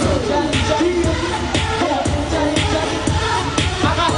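Live K-pop concert performance: a male boy-band song sung into headset microphones over a pop backing track with a steady beat.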